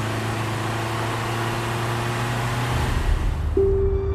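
Steady road noise of a car driving along a city street, tyres and engine with a low hum. About three seconds in it drops to a lower, duller rumble as if heard inside the cabin, and music tones come in near the end.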